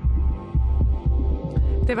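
Deep bass throbs from a radio station's animated logo ident, four pulses of about half a second each, just before a voice comes in at the very end.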